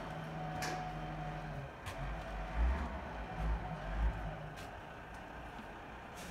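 Steady low hum that stops about a second and a half in, then a few dull low thuds and scattered light clicks: handling noise and footfalls as the phone camera is carried across the pontoon boat's deck.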